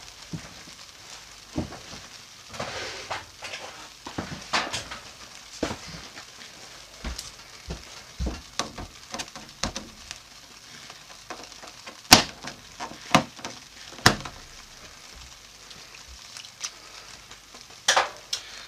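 Plastic cling wrap stretched over a crock pot being punctured with a thin skewer: irregular sharp pops and crinkles, with the loudest pops about twelve and fourteen seconds in.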